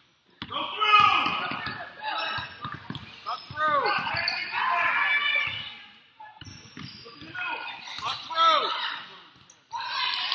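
Basketball being dribbled and bouncing on a hardwood gym floor, with sneakers squeaking and players and spectators shouting, all echoing in a large gym.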